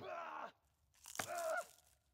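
A sharp click, then two short, faint hums through a mouthful of food from a woman chewing a sandwich, each falling in pitch.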